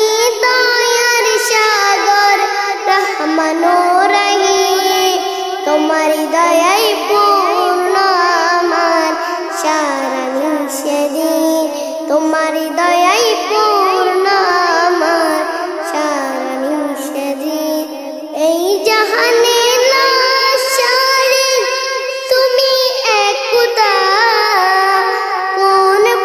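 A child singing a Bengali Islamic naat (gazal), long held notes gliding up and down in pitch, with a brief dip in the singing about nineteen seconds in.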